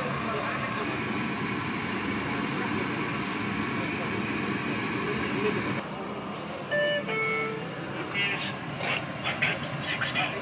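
Steady hubbub of indistinct voices and street noise that changes abruptly a little past halfway. Then come two short beeps at different pitches, like a horn or signal tone, followed by scattered clatter and snatches of voices.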